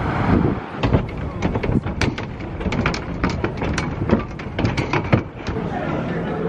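Outdoor city ambience: a steady low rumble of traffic and wind. Through the middle there is a run of irregular sharp clicks and taps, several a second, that stop shortly before the end.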